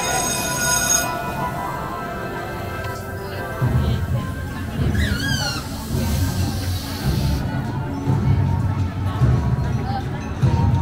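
Music playing; a low pulsing beat comes in about three and a half seconds in. A brief high, wavering squeal sounds about five seconds in.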